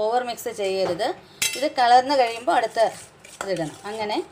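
Metal spoon clinking and scraping against a stainless-steel bowl as powdered sugar is stirred into oil, with a few sharp strikes of the spoon on the bowl.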